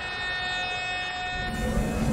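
A held, ominous chord from a TV episode's score: several steady tones sounding together. About one and a half seconds in, a low rumble swells in under it.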